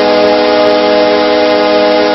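Hockey arena goal horn blaring one long, steady chord over a cheering crowd, signalling a home-team goal.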